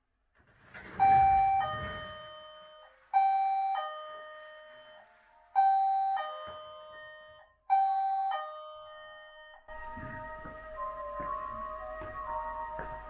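Electronic music box chiming a two-note ding-dong, high then low, four times about two seconds apart, each ringing and fading. Near the end it moves into a steady run of bell-like notes, a simple tune.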